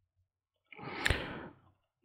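A person's short audible exhale, a sigh into a close microphone, lasting under a second around the middle, with a small sharp tick inside it.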